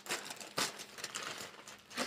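Faint rustling of a plastic shipping bag being handled and emptied, with a few light clicks of small items.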